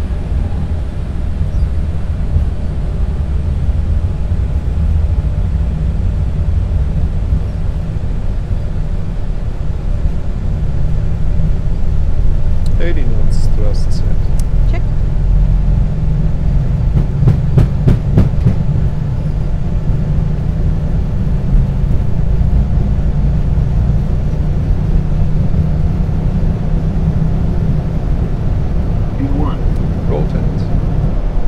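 Cockpit noise of an Airbus A220 on its takeoff roll: a loud, steady low rumble of the engines at takeoff thrust and the wheels running on the runway. The rumble grows louder about twelve seconds in, with a quick run of sharp knocks about seventeen seconds in.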